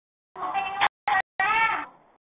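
A high-pitched, wavering cry that rises and falls in pitch past the middle, after a couple of shorter high sounds. The audio drops out abruptly several times.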